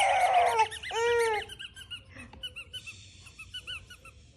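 Rubber giraffe squeaky toy squeaking as it is squeezed: a loud squeak about a second in, then a run of short, higher squeaks.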